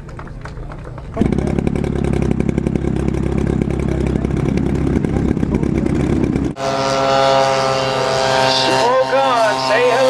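Engine of a giant-scale radio-controlled model airplane being started with a handheld starter, catching about a second in and running with a rapid, rough pulsing. About six and a half seconds in the sound switches abruptly to a model biplane's engine flying past, a steady tone that slowly falls in pitch.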